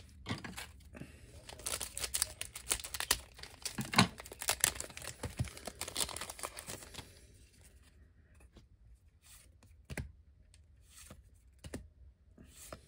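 A Weiss Schwarz booster pack's foil wrapper being torn open and crinkled, a dense crackle for about seven seconds. It then goes quieter, with a few soft clicks as the cards are handled.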